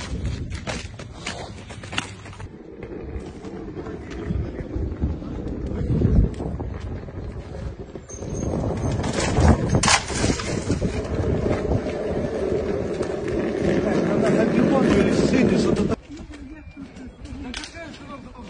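Indistinct voices over steady outdoor noise. It grows louder about eight seconds in and drops off suddenly near the end.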